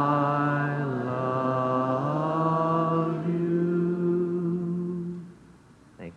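A man's voice singing the closing held notes of a hymn, the last note held for about three seconds before stopping about five seconds in.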